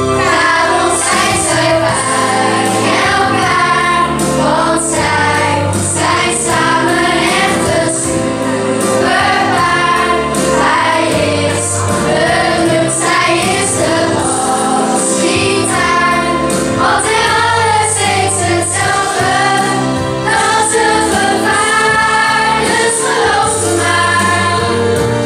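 A group of children singing a song together in chorus over instrumental accompaniment.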